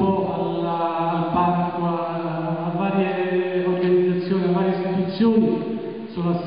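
A man speaking continuously into a handheld microphone, his voice amplified in the hall and held at a fairly level pitch.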